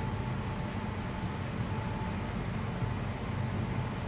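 Steady indoor background hum, low and even, with a faint high steady tone running through it; no distinct sound events.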